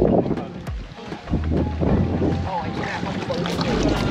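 Wind buffeting the microphone in gusts, over water sloshing around wading legs in shallow sea water, with brief indistinct voices about three seconds in.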